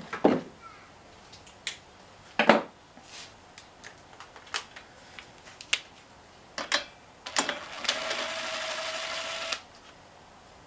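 Cordless drill/driver motor running steadily for about two seconds near the end, after a series of clicks and knocks from tools being handled on the bench.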